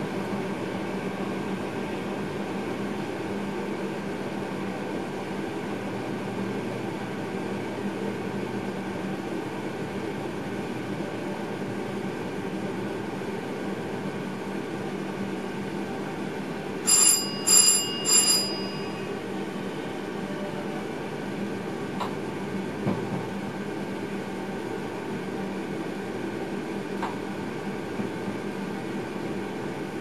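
Steady hum and rumble inside an electric train's cab running slowly, with three quick, loud bell-like rings a little past halfway.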